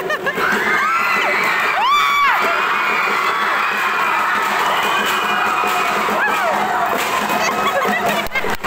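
A large crowd of spectators, many of them children, cheering and shouting together, with high shrieks. One loud whoop rises and falls about two seconds in.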